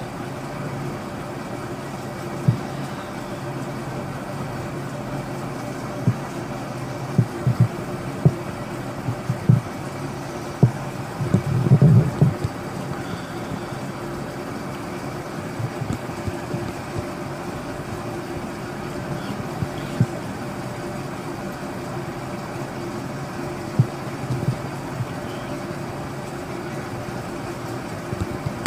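Steady low background hum with a few faint steady tones in it, broken by scattered soft knocks and a short cluster of them about twelve seconds in.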